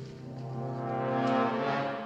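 Orchestral film score: brass instruments hold a sustained chord that swells in loudness about midway and then fades.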